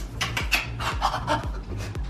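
A woman panting fast and hard through her mouth in short, quick breaths, several a second: deliberate, joking hyperventilating.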